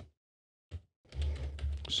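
Typing on a computer keyboard: a single keystroke at the start and another shortly after, then a quicker run of keystrokes through the second half.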